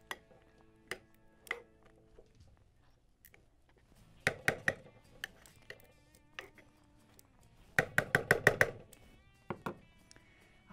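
A metal serving spoon clinking and scraping against a pot as chicken and asparagus are spread through a thick cream sauce: a few single clinks, some with a short ring, then quick clusters of taps about halfway through and again near the end.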